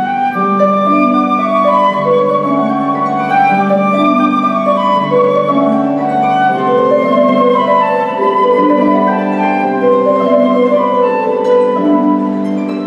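Flute and concert harp playing a slow classical duet: the flute holds a sustained melody over the harp's plucked accompaniment.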